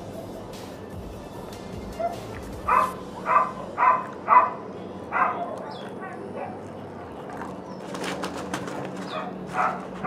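A dog barking in the background: a run of about five short barks a few seconds in, then more barks and yips near the end.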